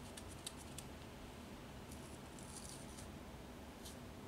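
Faint crisp ticks and light rustling of a roll of paper labels being handled in the fingers, a cluster of them about halfway through.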